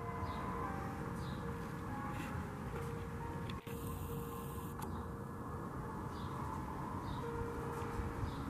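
Outdoor yard ambience: a low steady rumble with faint, short bird chirps every second or so.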